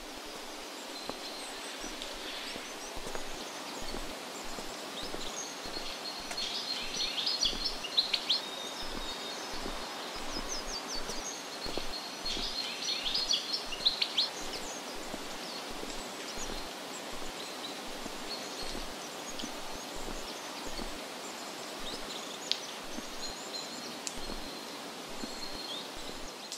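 Forest ambience: a steady background hiss with birds chirping in quick high phrases, loudest in two bursts in the first half and fainter later on.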